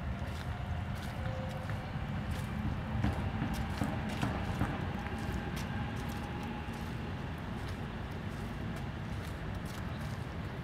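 Footsteps on a path strewn with dry fallen leaves, a run of short irregular crunches and clicks over a steady low rumble.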